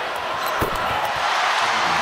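Arena game sound of an NBA basketball game: crowd noise swelling steadily, with a basketball thudding once on the hardwood court about half a second in.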